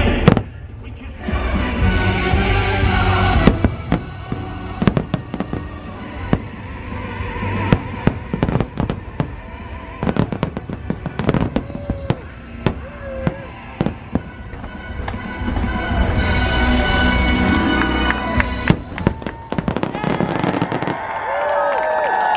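Aerial fireworks show: many sharp bangs and crackling bursts going off in quick succession, over the show's music soundtrack. The music is strongest near the start and again towards the end, with the bangs densest in between.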